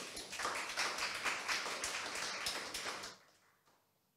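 A small audience clapping, dying away about three seconds in.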